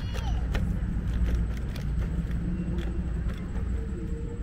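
Steady low rumble of an electric scooter riding along a paved path: the noise of the moving ride, with a faint thin whine coming in near the end.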